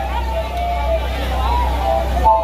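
Crowd voices chattering over a steady low hum from the PA system.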